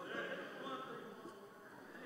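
Quiet room tone with faint, distant talking, fading toward the end.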